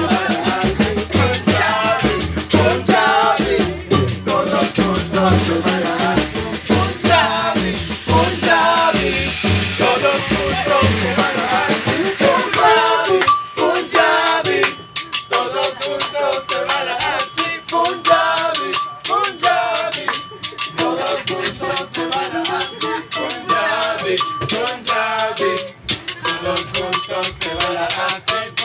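Live band music: upright bass, drums and hand percussion driving an upbeat groove under a wavering melody line. About thirteen seconds in the bass drops out, leaving percussion and melody.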